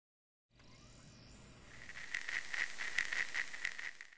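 A faint hiss fading in, joined by a high, steady chirping that pulses about five times a second.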